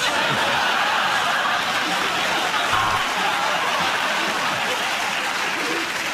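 Studio audience laughing and applauding together. It starts suddenly and holds steady, easing off slightly near the end.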